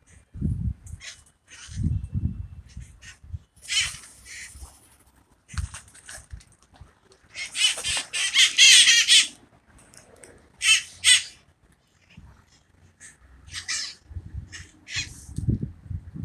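Wild parakeets giving harsh calls in short bursts. The loudest is a long squawking burst of about two seconds about halfway through, followed a couple of seconds later by a quick pair of calls.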